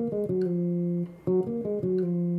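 Squier Classic Vibe 60s Jazz Bass played fingerstyle: two short melodic phrases, each a few quick notes settling on the same long held note. The first ends about a second in and the second follows at once and rings on; it is the same lick started from two different notes.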